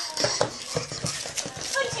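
A small dog's claws tapping and skittering on a wooden floor as it scrambles about in play: a quick, irregular run of short clicks.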